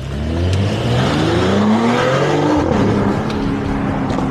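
Mercedes-AMG GLE 53 Coupé's turbocharged inline-six accelerating hard from a standstill, its note rising steadily, then dropping with an upshift about two and a half seconds in and pulling on in the next gear.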